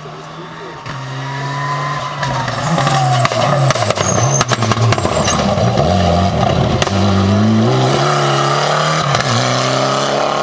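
Mitsubishi Lancer Evolution rally car's turbocharged four-cylinder engine driven hard as the car approaches and passes. The engine note climbs and drops in steps through gear changes, getting louder over the first few seconds, with several sharp cracks along the way.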